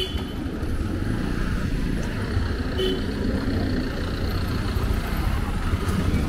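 Road traffic: engines of trucks, auto-rickshaws and motorbikes running in a steady rumble, with a brief horn toot about three seconds in.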